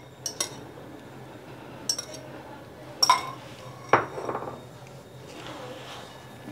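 A few light clinks of kitchenware as a cup of egg yolks is tipped out over a bowl of whipped egg whites. The loudest, ringing clink comes about three seconds in, with a duller knock a second later.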